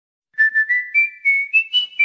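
A short whistle-like jingle: about seven quick notes, each with a sharp attack, climbing in steps to a higher held final note.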